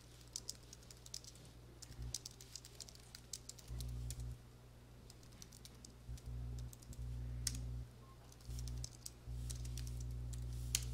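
Typing on a computer keyboard: scattered, faint key clicks in short runs as terminal commands are keyed in. A low steady hum switches on and off several times.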